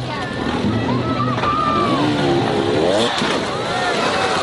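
Dirt bike engine revving, rising in pitch about two seconds in, over background music.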